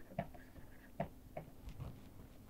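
Faint, scattered clicks of a stylus tapping and scratching on a tablet during handwriting, about five short ticks over two seconds.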